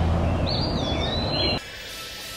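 Outdoor ambience with a steady low rumble, and one bird's whistled call about half a second in that dips and then holds for about a second. The whole ambience cuts off suddenly near the end.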